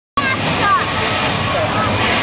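Monster truck engines running steadily under the voices and shouts of a grandstand crowd.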